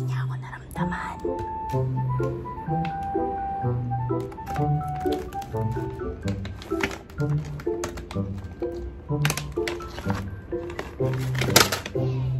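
Background music, a light tune of short repeated notes over a bass line, with scattered clicks and rustles from the phone rubbing against hair.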